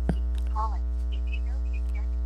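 Steady low electrical mains hum on the recording, with a single sharp click about a tenth of a second in.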